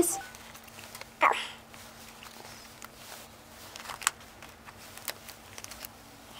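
Quiet handling of a flat-fold N95 respirator as it is fitted over the face and its straps are pulled back over the head, with a few faint clicks. A short breathy vocal sound comes about a second in, and a faint steady hum runs underneath.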